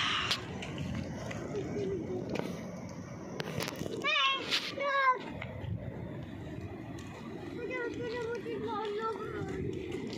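A young child's voice: two short, high calls about four and five seconds in, then a wavering babble near the end, over steady background noise.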